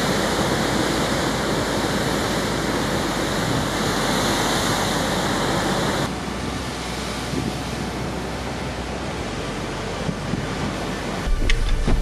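Heavy storm surf breaking and washing over rocks below sea cliffs: a steady rush of churning water. About six seconds in the sound changes abruptly and gets somewhat quieter.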